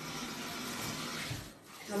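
Kitchen tap running into a stainless-steel sink, a steady hiss of water that cuts off about a second and a half in.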